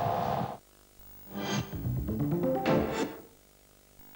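The live broadcast sound cuts off about half a second in. After a short pause comes a TV commercial-break jingle: a whoosh, a run of rising notes, and a second whoosh, then it falls quiet again.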